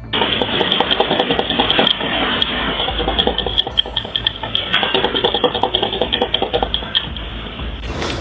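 A building shaking in an earthquake: a low rumble with a dense, continuous rattling and clattering of loose objects.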